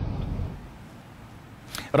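Low rumble of wind and road noise on a phone microphone filmed from inside a car, fading out within the first half second, then quiet with a couple of short clicks near the end.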